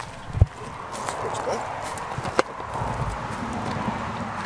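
Branches and dry twigs rustling and snapping as someone pushes in under a low evergreen tree, with a sharp knock about half a second in and a thinner snap a little past two seconds.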